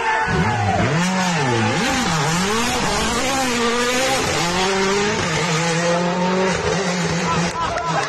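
Hyundai i20 N Rally1 rally car's turbocharged engine revving up and down several times, then held at steady revs for the last few seconds, as the car works to get going again on ice after spinning.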